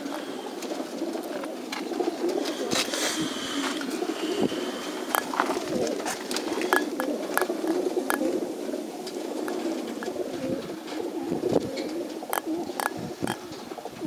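Many racing pigeons cooing together in their transport crates, a dense, steady chorus with scattered small clicks and knocks.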